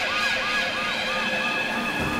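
A siren-like yelp, the pitch rising, holding and dropping about four times a second, layered over a held high chord.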